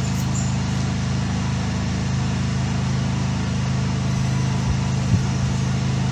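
A steady low machine hum with no change in level.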